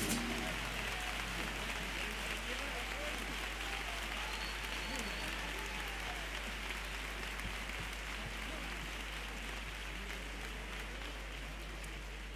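Theatre audience applauding, with scattered voices in the crowd; the applause slowly dies down.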